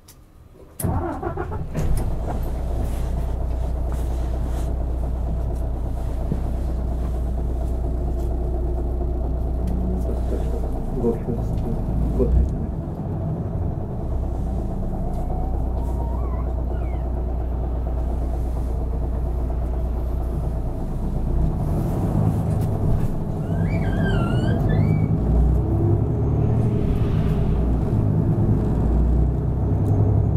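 A city bus's diesel engine starts up suddenly about a second in, after near-quiet with the bus standing still, then runs with a steady low drone as the bus pulls away and drives on.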